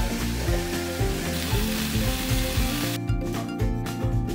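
Food sizzling on the stovetop under background music with a steady beat. The sizzle cuts off suddenly about three seconds in, leaving only the music.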